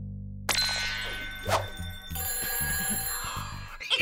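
The band's last chord is held, then a sudden musical sting about half a second in. A telephone then rings in steady high tones over a bouncy beat: the show's red hot phone ringing.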